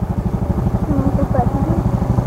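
Motorcycle engine running at low speed with a steady, rapid putter. A voice is heard faintly and briefly about halfway through.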